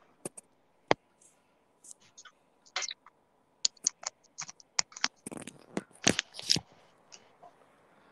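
Handling noise from a hand working a video-call device close to its microphone: a scattered run of sharp clicks and taps, with a denser stretch of scraping and rubbing about five to six and a half seconds in.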